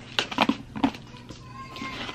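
A few short sharp clicks and rustles of a small plastic food container being handled and opened, with faint music in the background.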